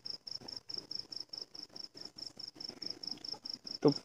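A cricket chirping steadily in the background, about four chirps a second, under faint crackle from the recorded phone line.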